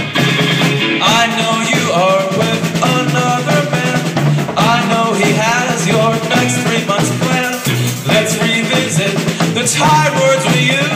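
A live rock band playing loud: electric guitars over a drum kit, with a wavering melodic line that bends up and down in pitch.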